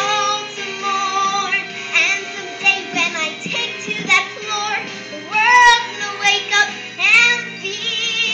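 A young girl singing a show tune over instrumental accompaniment, with held notes and sliding pitch bends.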